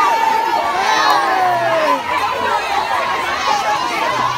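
A large crowd of young people and children shouting and chattering at once, many voices overlapping in a steady din.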